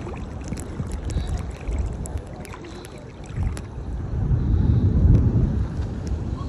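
Sea water sloshing around a phone held just above the surface by a swimmer, with wind rumbling on the microphone. The rumble swells about four seconds in and eases near the end, with scattered small clicks throughout.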